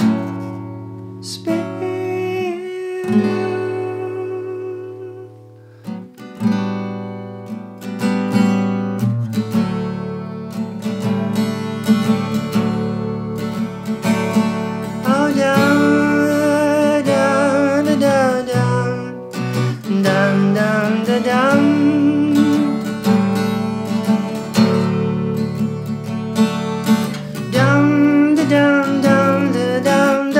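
Acoustic guitar played live, picked and strummed as a steady accompaniment. A man's singing voice comes in over it in phrases, mostly in the second half.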